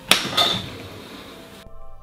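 Clear acrylic sheet snapped along a knife-scored line against the workbench edge: a sharp crack just after the start and a second, smaller crack a moment later, followed by about a second of handling noise.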